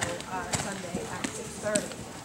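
Hoofbeats of a horse cantering on soft sand arena footing, a few sharp strikes spread through the two seconds, with voices talking underneath.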